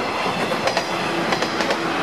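A train passing, with a steady running noise and repeated sharp clacks from the wheels over the rails.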